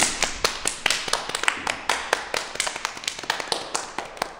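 A small group clapping their hands in a short round of applause, thinning out near the end.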